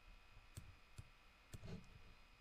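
A few faint computer mouse clicks over near silence.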